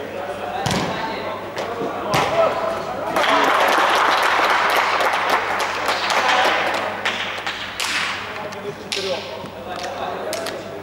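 Two thumps of a football being struck, then several seconds of loud shouting from the players, the outburst that greets a goal.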